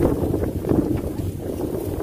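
Wind buffeting the microphone: an irregular, gusty low rumble.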